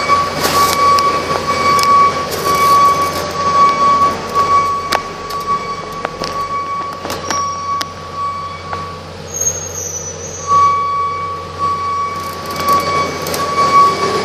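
Truck's dashboard warning chime ringing in a fast, even repeating pattern with the driver's door standing open, stopping for about a second and a half past the middle and then starting again. Scattered light clicks and knocks of handling sound over it.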